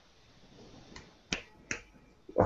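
Three short, sharp clicks: a faint one about a second in, then two louder ones close together, over faint background noise.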